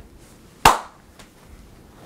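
A single sharp hand clap, with a brief ring-out after it.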